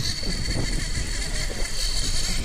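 Triple Suzuki outboard motors running on a trolling boat, with water rushing in the wake and a steady high whine over the rumble.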